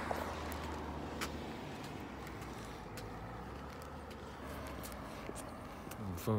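Steady low rumble of road traffic going by, with a few faint clicks.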